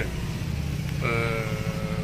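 A motor vehicle engine idling close by, a steady low rumble. About halfway through, a steady held tone joins it for about a second.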